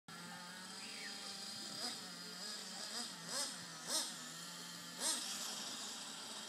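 Radio-controlled model car motor blipping its throttle, four quick rising-and-falling revs about a second apart over a steady low drone.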